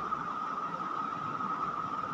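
Steady room background noise: a constant hiss with a steady high-pitched whine running through it.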